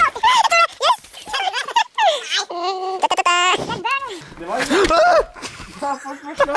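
Young men's voices calling out and exclaiming without clear words, with one long high-pitched yell held for about a second near the middle.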